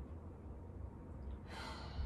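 A woman's breath during a kettlebell single-leg deadlift: a short breathy exhale about one and a half seconds in as she hinges forward, over a low steady hum.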